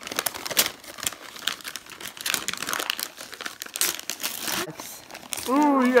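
Wrapping paper being torn and crumpled by hand as a present is unwrapped: an irregular run of crinkling rustles and rips.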